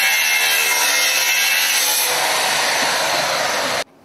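Handheld angle grinder cutting through a steel bar: a steady, high-pitched grinding that stops suddenly just before the end.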